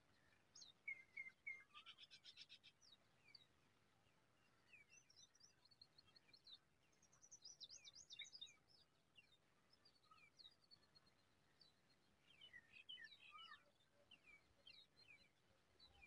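Faint bird chirps and short high calls, many quick falling notes, with bursts of rapid notes about two seconds in, around eight seconds and near thirteen seconds.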